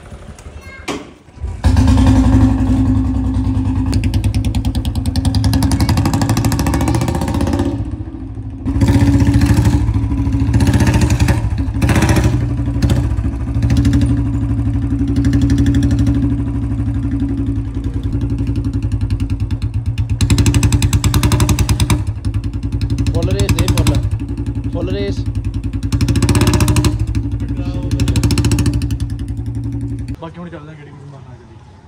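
Royal Enfield Bullet 350's single-cylinder engine starting up a couple of seconds in, then idling with a steady pulsing beat. It is revved in short bursts several times, the loudest around the middle and near the end.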